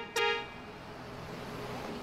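Two short beeps of a cartoon bus horn right at the start, then a faint steady background hum.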